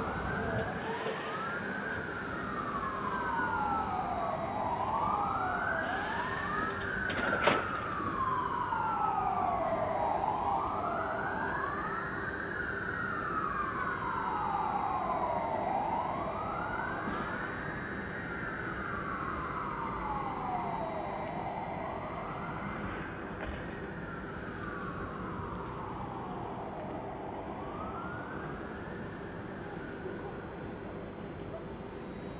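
Emergency-vehicle siren wailing, rising and falling in slow sweeps about every five to six seconds and getting slightly fainter toward the end. A single sharp click sounds about seven seconds in.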